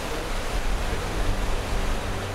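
Floodwater pouring over the edge of an open-cut mine pit and cascading down its wall, a loud, steady rush of falling water.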